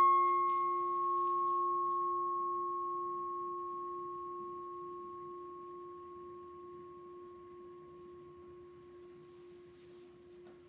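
A struck altar bell ringing out and fading slowly over several seconds: one clear low tone with a bright higher tone above it, and no second strike. It marks the consecration and elevation of the host at Mass.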